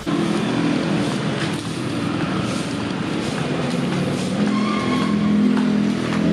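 Steady road traffic noise with a low engine hum running throughout.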